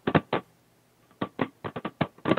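Irregular sharp clicks over the band-limited video-call audio: two or three near the start, then a quick run of about six in the second half.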